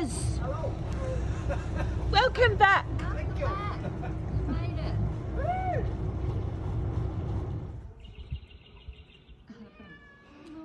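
The Maritimo 48's engines idling with a low, steady rumble while the boat is berthed, then shutting down about eight seconds in. Over them come several short calls that rise and fall in pitch, the loudest a couple of seconds in.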